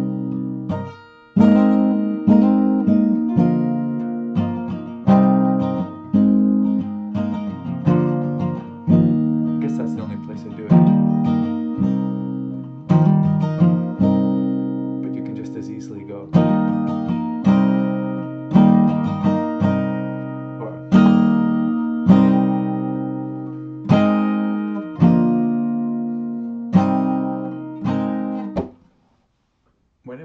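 Acoustic guitar strummed in a steady folk rhythm, about one chord stroke a second, each chord ringing out before the next; the playing stops shortly before the end.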